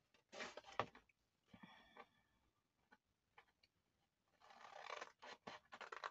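Scissors snipping through thick card, faint, with a few short rustles of the sheet being handled early on and a quicker run of cuts near the end.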